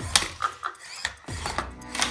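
Small Fingertech Viper kit combat robot ramming another small plastic robot on a hardwood floor: several sharp knocks and thwacks over the whir of its little drive motors.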